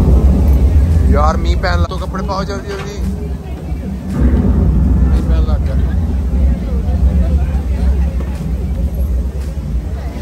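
A loud, deep rumble that starts suddenly and holds steady, with voices calling over it.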